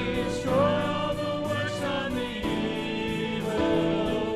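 Small mixed vocal group of men and a woman singing a contemporary worship song in harmony, over accompaniment that includes sustained low notes.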